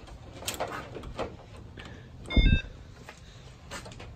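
Handling clicks and knocks as a Power Probe circuit tester is picked up, with a thump about halfway through and a quick run of short electronic beeps at a few different pitches as the tester powers on.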